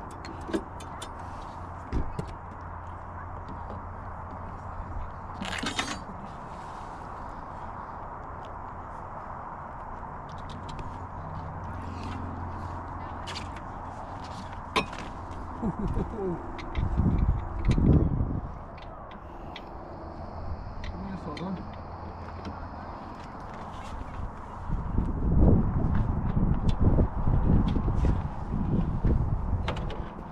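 Scattered clicks and knocks as the clips and stay rods of a hard-shell roof-top tent are fitted and handled, over a steady low hum. Heavy low rumbles come in around 17 s and again through the last few seconds.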